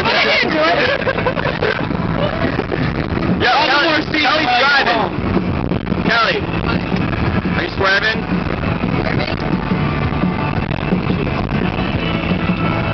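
Voices inside a moving car, with wordless laughing or shouting in the first half over steady road noise. From about eight seconds in, music with held notes takes over.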